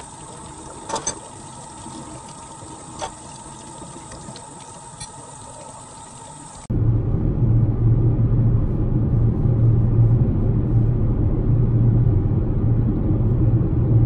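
Kitchen faucet running into a sink, with a few clinks of a metal spoon. Then, after a sudden cut, a louder, steady low rumble of road and engine noise inside a moving car's cabin.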